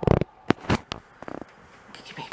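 A small dog biting and chewing a plush toy: a quick series of about six short, sharp sounds in the first second and a half, then quieter.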